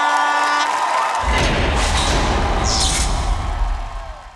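Crowd cheering over a held tone that ends under a second in. About a second in, a deep bass-heavy music sting comes in, with a whoosh near three seconds, then fades.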